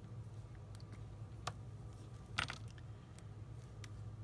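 Faint, scattered clicks and crinkles of plastic being handled, the loudest about two and a half seconds in, as a sheet of rhinestones in its clear plastic sleeve is set down and pressed flat on the desk. A steady low hum runs underneath.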